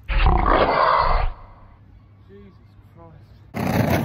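A fallen skateboarder's loud, deep, roar-like yell, about a second long, then a few faint low moans.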